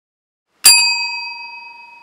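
A metal counter service bell struck once, its single ding ringing on and fading away over about two seconds.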